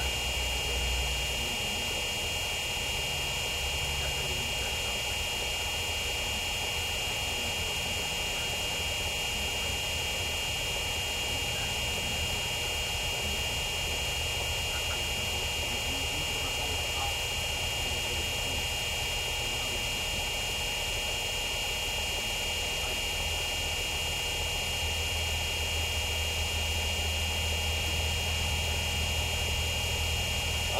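Steady background drone: a constant high-pitched whine over a low rumble, with no distinct knocks or ball catches.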